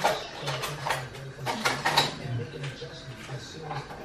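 Light, sharp clicks and ticks of fine metal tweezers working a small plastic wiring connector, a cluster of them in the first two seconds and fainter ones after.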